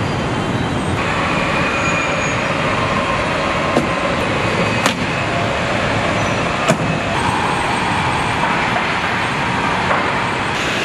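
Pickup-truck assembly-line floor noise: a steady hum and hiss of plant machinery, broken by three short, sharp knocks from work on the line between about four and seven seconds in.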